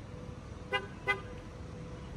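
Two short car-horn chirps, about a third of a second apart, over a faint steady tone.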